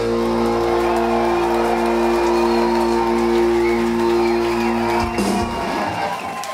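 Live rock band's electric guitar and bass ringing out one long held chord at the end of a song, cut off about five seconds in, with the crowd shouting underneath.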